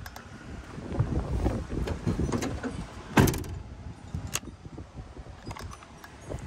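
Rear cargo doors of a Ford Transit 250 van being shut: one loud slam about three seconds in, then a smaller latch click about a second later, with low wind rumble on the microphone throughout.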